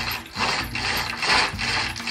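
Window roller blind being pulled down by its cord, the mechanism ratcheting in about four hand-over-hand pulls.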